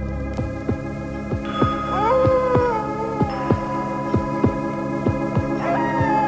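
Eerie electronic title music: a steady drone under a regular pulse of about three beats a second, joined about a second and a half in by sliding, wavering tones that rise and then slowly fall.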